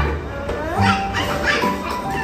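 Background music with a steady low bass line and held tones, with a child's short, high, wavering vocal sounds over it.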